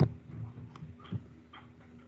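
A sharp computer-mouse click, then a few soft knocks, over a faint steady hum.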